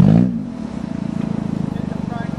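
Four-cylinder engine of a 1992 Toyota Corolla, its revs falling off in the first half-second after a jump, then running steadily at low revs.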